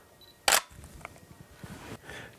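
DSLR camera shutter firing once, a single short, sharp click about halfway through, exposing one frame at 1/100 s.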